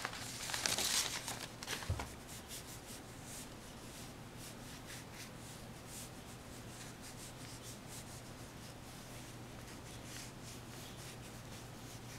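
Chinese painting brush dabbing and rubbing ink onto paper: faint dry scratching strokes, with louder rustling of the paper in the first two seconds, over a low steady hum.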